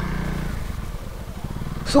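Honda CRF250L single-cylinder engine running at idle with a steady low hum.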